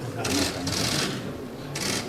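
Press cameras' shutters firing in rapid bursts, a long rattling run of clicks early on and a shorter one near the end, over a low murmur of voices.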